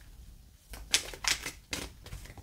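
A deck of oracle cards being shuffled by hand: a quiet start, then four quick crisp slaps of cards from about a second in.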